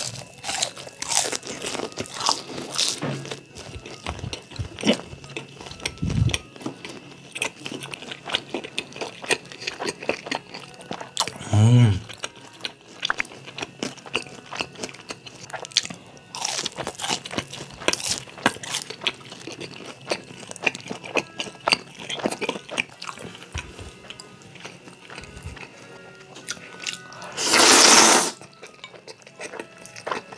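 Close-miked crunching and chewing of crispy deep-fried tangsuyuk, sharp crackles with each bite. Near the end comes a long, loud slurp of jjajangmyeon noodles.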